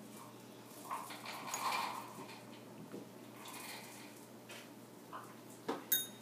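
Faint clinks and handling noises of a dropper in small glass cups of coloured liquid, with one sharper clink near the end.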